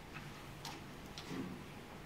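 A few faint, irregular clicks over quiet room noise.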